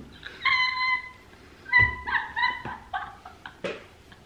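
A woman's high-pitched, squealing laughter mixed with tearful crying: two long held squeals, one about half a second in and one about two seconds in, then shorter gasping bursts.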